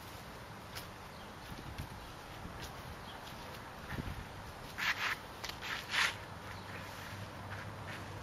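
Quiet outdoor background with faint scattered ticks, and a short run of louder scraping rustles about five to six seconds in.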